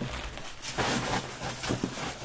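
Faint rustling and handling of small scrapbook embellishments on a tabletop, with a couple of soft taps about a second in and near the end.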